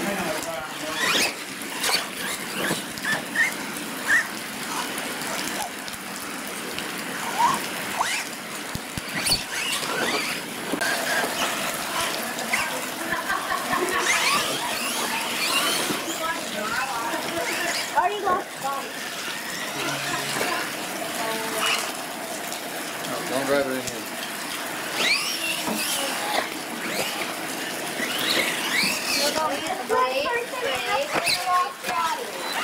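Radio-controlled monster trucks' motors whining, repeatedly rising and falling in pitch as they rev through mud, over a steady hiss of rain.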